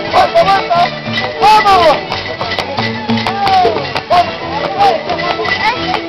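Live traditional Andean fiesta music with a shaken rattle keeping the rhythm over stepping bass notes, and voices calling out in rising-and-falling shouts over it.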